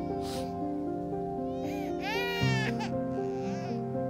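Soft background music with sustained notes, over which a cartoon baby gives a short, high-pitched cry about two seconds in.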